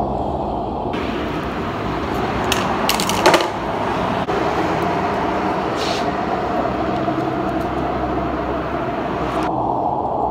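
A steady mechanical drone runs throughout. About three seconds in, a short burst of sharp metallic clicking from hand tools working a steel rod is the loudest moment, with another brief click near the six-second mark.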